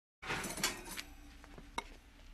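Oven rack rattling and a pie dish scraping and clinking on the wire rack as a pie is slid out of the oven with oven mitts, busiest in the first second, then one sharp ringing clink near the end.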